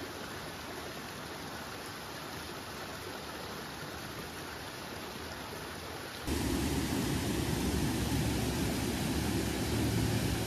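A small rocky mountain stream rushing and splashing over boulders, a steady rush of water. About six seconds in, it cuts to a louder, deeper steady rush.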